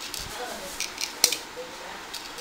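A few short, sharp clicks from the plastic handle of an electric mosquito bat being handled, the loudest a little past the middle.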